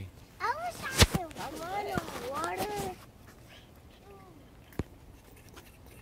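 High-pitched young children's voices calling out in the first half, words unclear. There is a sharp click about a second in and another near five seconds, then it goes quiet.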